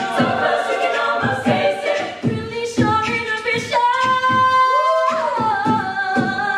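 A women's a cappella group singing in harmony, with a soloist over the backing voices and vocal percussion keeping the beat. A chord is held about two-thirds of the way through, then the voices slide down into the next phrase.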